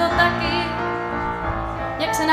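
Live song: a woman's voice holding a wavering sung note over electric keyboard chords.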